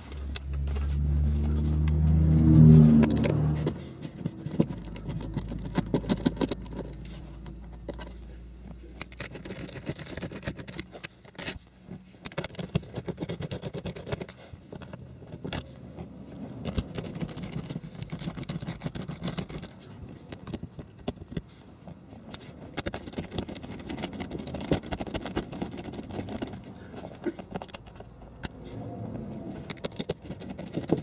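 A motor vehicle's engine hum swells and fades over the first few seconds. Then a ratchet with a 5/16 socket clicks and rattles in irregular runs as the bolts of a shifter boot retainer are undone.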